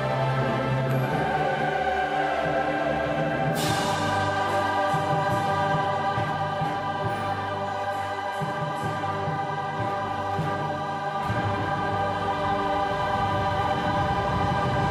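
A large mixed choir of adults and children singing a song with an orchestra, horn, flute and strings among them, in sustained chords. The sound brightens and swells about three and a half seconds in.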